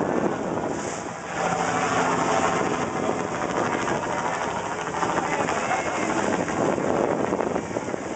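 Steady rush of wind and water with a boat engine running underneath, getting louder about a second and a half in.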